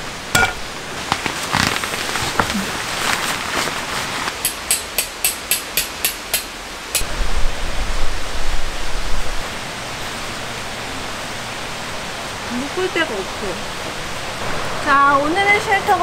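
Steady rush of running water under the noises of pitching a nylon tarp tent: rustling and handling knocks, then a quick run of about eight sharp clicks a little over four seconds in, followed by a couple of seconds of louder low rumbling handling noise.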